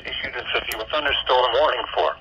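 A NOAA Weather Radio broadcast voice reading a severe thunderstorm warning, heard through a small handheld radio's speaker.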